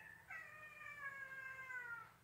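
A domestic cat meowing: the tail of a short call, then one long drawn-out meow that slowly falls in pitch.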